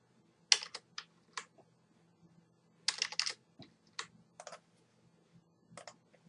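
Computer keyboard keystrokes and mouse clicks: scattered sharp taps, with a quick run of several keys about three seconds in.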